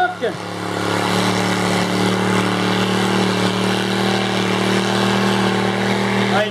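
Car engine held at steady high revs during a burnout, its spinning tyres pouring out smoke, with a broad steady noise over the engine note.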